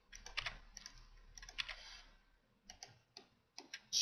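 Faint, scattered clicks and taps from a computer keyboard and mouse, a run of them in the first two seconds, a short lull, then a few isolated clicks near the end.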